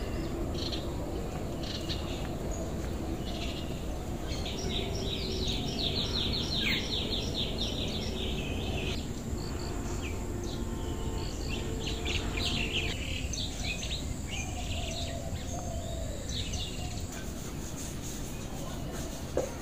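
Birds chirping and singing over steady outdoor background noise, with runs of quick, rapidly repeated high notes about a quarter of the way in and again past the middle.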